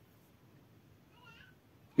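A cat meowing faintly, once, about a second in, with a quiet room around it.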